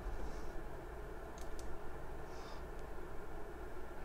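Quiet room tone with a steady low hum and two faint short clicks about a second and a half in.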